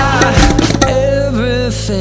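Tabla strokes over a recorded pop song for the first second or so. The drumming then mostly drops out, leaving a held, wavering vocal line over a steady low bass note.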